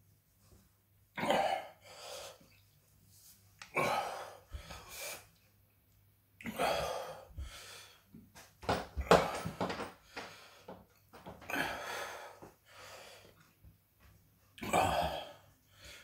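A man breathing hard in repeated bursts of gasps, huffs and coughs, about every two to three seconds, his mouth burning from Carolina Reaper chili heat.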